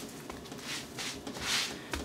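Hands rubbing and pressing dry seasoning into a raw tri-tip on a wooden cutting board: two soft rustling rubs, the second a little louder, about a second apart.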